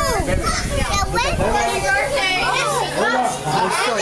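Several children talking and calling out over one another, high-pitched overlapping chatter, with a low rumble under it in the first half.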